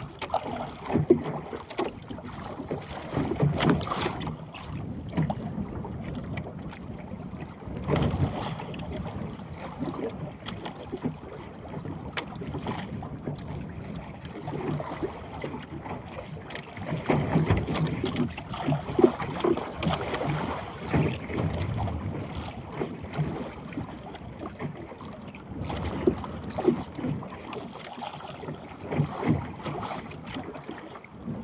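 Wind buffeting the microphone and sea water sloshing and slapping against the hull of a small outrigger fishing boat, with scattered knocks throughout.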